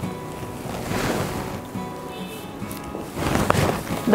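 Silk sari fabric rustling close to the microphone as it is handled and folded, in two swells, about a second in and again near the end, over soft background music.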